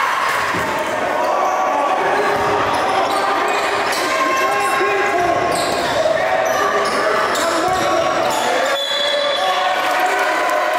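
A basketball dribbled on a hardwood gym floor during play, with players' and spectators' voices carrying through a large gym.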